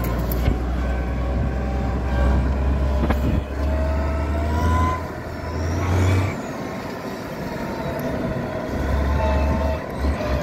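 Turbocharged diesel engine of an IMT 5136 tractor running as it drives along a dirt track, its note rising and falling with the throttle. A deep rumble drops away about six seconds in and comes back near the end.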